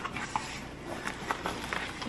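Light rustling with a few soft, scattered clicks as a cardboard box of plastic-wrapped soap bars is handled.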